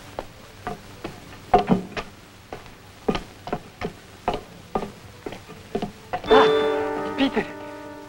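Footsteps knocking on a hard floor, about two a second, then about six seconds in a held chord of film music comes in and sustains.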